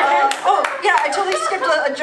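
Audience clapping in scattered, uneven claps over voices, in reaction to a joke.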